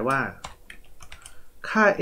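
Typing on a computer keyboard: a handful of separate key clicks in the pause between words.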